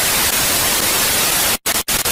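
Television static sound effect: a steady hiss of white noise, cut by two brief dropouts near the end.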